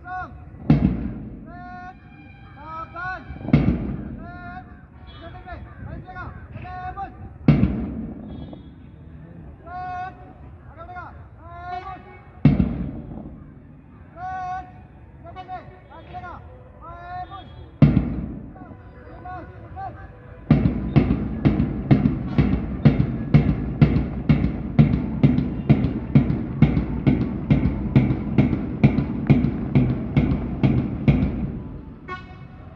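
A squad of uniformed cadets at parade drill. Shouted drill commands are punctuated every few seconds by a loud, sharp stamp of boots in unison. About two-thirds of the way in this gives way to a steady marching beat of about two steps a second.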